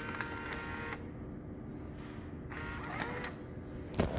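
Vending machine bill acceptor motor whirring as it pulls in a dollar bill, in two short runs about a second and a half apart.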